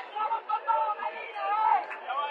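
Indistinct speech: voices talking that the transcript does not make out as words.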